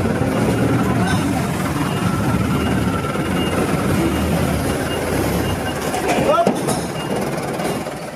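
Busy street noise among jeepneys: vehicle engines rumbling and a babble of voices.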